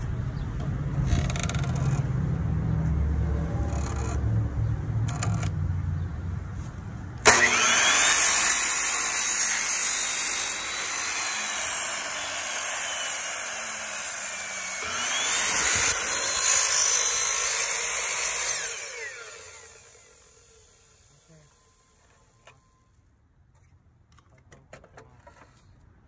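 Ryobi electric miter saw starting abruptly about seven seconds in and running loudly as its blade cuts through a cement-coated EPS foam molding, then winding down to a stop around twenty seconds in. Before the saw starts there is a low rumble with a few knocks.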